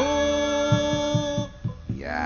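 Gamelan-style accompaniment of a wayang puppet show: a long steady held note over a few drum strokes, dropping away about a second and a half in.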